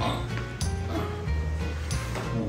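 Background music with a steady low bass line, with a few short animal calls heard over it.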